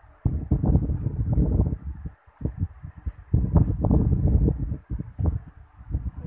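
Uneven low rumbling noise on the microphone, coming in gusts with brief dips, like air buffeting the mic.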